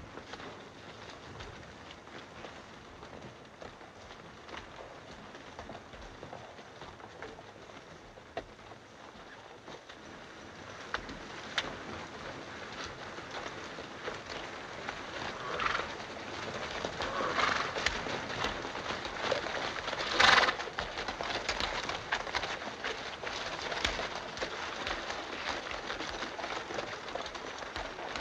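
Hoofbeats of a group of horses on a dirt street, faint at first and growing louder from about ten seconds in as the riders approach, with a few louder bursts near the middle.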